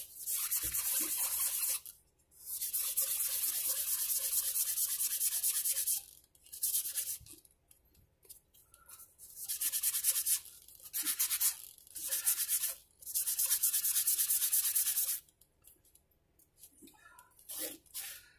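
A 320-grit abrasive pad rubbed back and forth over a mandolin's metal frets, in runs of scratchy strokes broken by short pauses, with only small scattered sounds in the last few seconds. The pad is smoothing and polishing the fret crowns after levelling.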